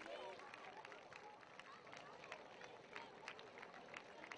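Very faint murmur of an outdoor crowd, with scattered indistinct voices and a few soft ticks.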